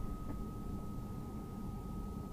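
Steady low background rumble with a thin, steady high-pitched tone running through it; no distinct handling sounds.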